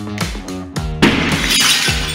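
A standard 4 mm window glass pane hit by a thrown brick shatters about a second in: a sudden loud crash with glass breaking up and falling for about a second. Being non-safety glass, it breaks into large sharp-edged pieces. Background music with a steady beat plays throughout.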